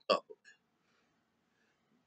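A man's voice finishing a word, followed by a faint short vocal sound, then near silence: room tone.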